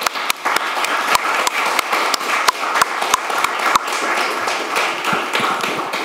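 Audience applauding: dense clapping from many hands that thins out near the end.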